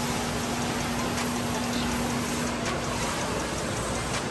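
Steady rushing background noise at a supermarket fish counter, with a constant low hum and a few faint ticks.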